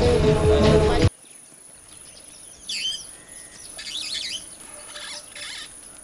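Music that stops abruptly about a second in. After it comes quiet open-air ambience, with birds chirping a few times.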